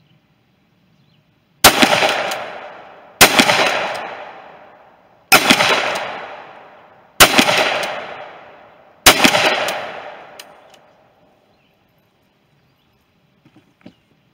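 Remington 870 Super Magnum pump-action 12-gauge shotgun firing five shots of 2¾-inch birdshot target load, about two seconds apart, each shot followed by a long echo fading off over a second or two.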